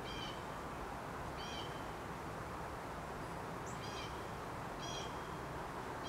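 A bird giving four short, high chirps at uneven gaps of one to two and a half seconds, over a steady background hiss.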